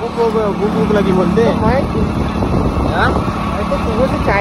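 Motorcycle engine running steadily while being ridden, with wind buffeting the microphone, under voices talking.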